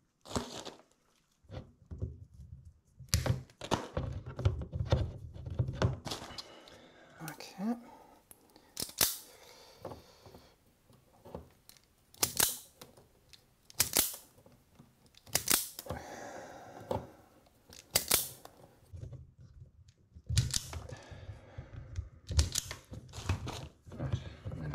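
Electrical cable being cut and stripped by hand: about five sharp snips from cutters, a second or two apart, with rustling and scraping of the plastic cable sheath between them.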